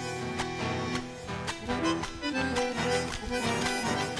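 Two bandoneons playing a chacarera melody in an instrumental passage, with a guitar and a bombo drum keeping a steady beat underneath.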